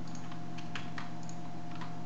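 A few separate computer keyboard keystrokes, about five spread over two seconds, over a steady low electrical hum.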